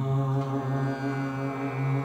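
Chanted mantra music: a low voice holds one long, steady note over a sustained drone.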